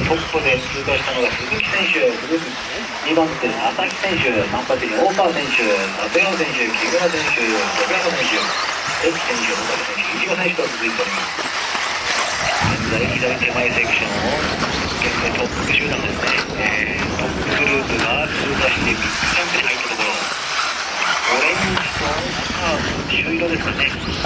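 Race announcer's voice talking through the first half and again near the end, over a steady high whine from the 4WD off-road RC buggies racing on the track.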